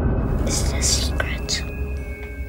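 Whispering: a few short, breathy, hissing syllables over a low droning horror score.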